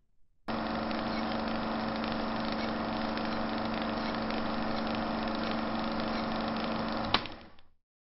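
A steady drone with a few held low tones, starting about half a second in and cutting off with a click about seven seconds in.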